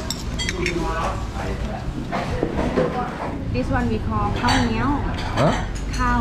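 Spoon and chopsticks clinking against a soup bowl, with a cluster of sharp clinks in the first second, over voices talking in the background.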